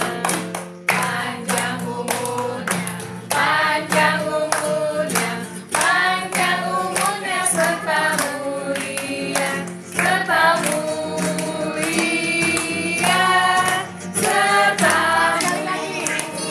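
A group of women and children singing a birthday song together, clapping their hands in time throughout.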